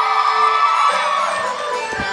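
A crowd of audience members cheering and shouting over steady background music, easing off a little in the second half.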